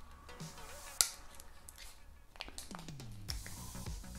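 A single sharp plastic click about a second in as the battery cover is fitted back onto a Tado smart radiator thermostat, with quiet background music underneath.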